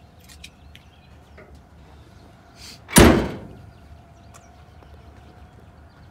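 Trunk lid of a 1967 Chevelle being shut, closing with one loud slam about three seconds in.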